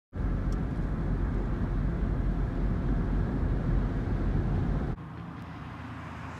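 Steady low road and engine rumble heard from inside a car travelling on a highway. It cuts off abruptly about five seconds in, leaving a quieter, even background noise.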